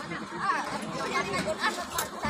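Several women and children talking over one another in a lively chatter at a water-collection point, with a short sharp click near the end.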